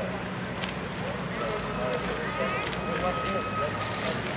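Bridge worksite sounds: faint, indistinct voices over a steady low hum, with scattered light knocks. A thin steady whine runs for a couple of seconds in the middle.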